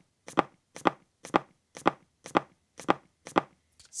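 Footsteps on wooden stairs played back as one wood footstep sound effect repeated about two times a second, every step the same. The identical repetition sounds horrible and unnatural, the problem of reusing a single sample for every footstep.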